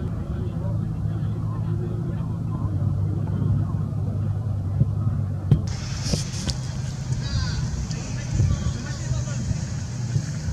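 Outdoor football training ambience: a few sharp thuds of footballs being kicked and faint distant shouts of players over a steady low rumble. A brighter hiss comes in suddenly a little past halfway.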